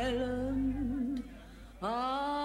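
A singer holds a long note with vibrato over a low bass accompaniment. The note and the bass stop about a second in, there is a short lull, and a new long held note begins near the end.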